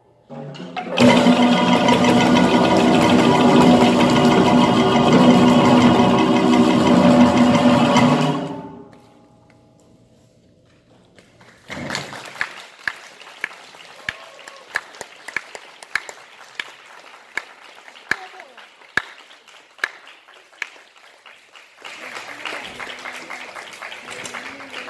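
Choir and small ensemble hold a loud final chord for about seven seconds, then it dies away. After a short pause, audience applause begins with scattered claps standing out and grows fuller near the end.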